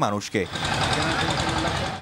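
A small motor or engine running with a fast, even rattle, starting about half a second in as a voice stops.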